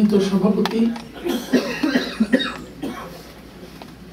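A man's voice over a handheld microphone, talking and coughing, then falling quiet for the last second.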